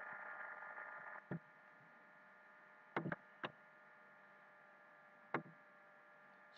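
A handful of short, sharp computer-mouse clicks: one about a second in, a quick pair near the middle, another shortly after, and a last one near the end. Under them a faint steady hum dies away in the first second.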